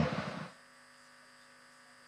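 A man's word fading out, then near silence with only a faint steady electrical hum.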